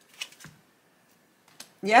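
Tarot cards being handled and laid down: a few short, light clicks as the cards are drawn from the deck and placed, with a quiet gap in the middle.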